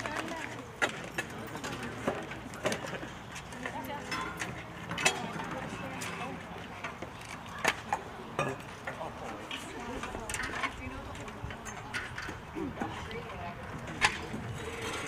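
Low murmur of voices with scattered sharp clicks, clinks and knocks, typical of a band between pieces handling instruments, chairs and music stands.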